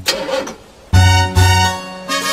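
A short, noisy cartoon engine-start sound effect plays as the ignition key is turned. About a second in, bouncy children's-song music with a strong bass line and brassy chords comes in loudly.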